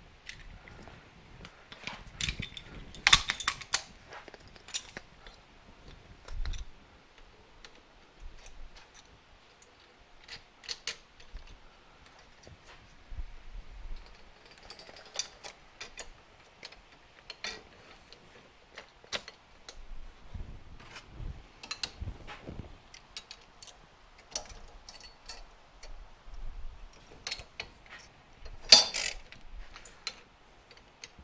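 Scattered metallic clicks, clinks and knocks as a Suzuki TS250 rear shock absorber, its coil spring and retainer are handled and worked in a homemade spring compressor. There is a quick flurry of clicks a couple of seconds in and one louder knock near the end.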